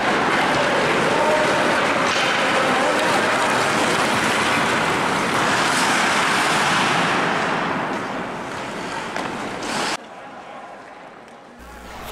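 Steady scraping hiss of many hockey skate blades cutting the ice during full-speed sprints, easing off about eight seconds in and much quieter from about ten seconds.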